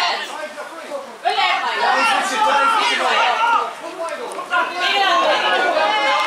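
People talking close by, several voices overlapping, in two stretches with a short break about four seconds in.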